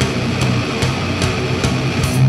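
Live heavy metal band playing loud: distorted electric guitar and bass over a full drum kit, with sharp hits recurring about two and a half times a second.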